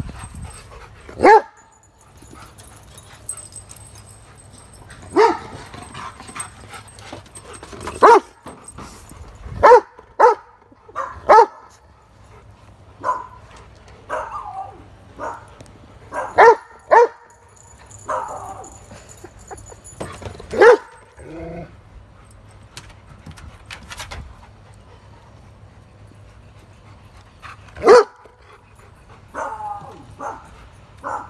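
Dog barks: sharp single barks and short runs of two or three, coming every few seconds, with a long pause before one last loud bark near the end.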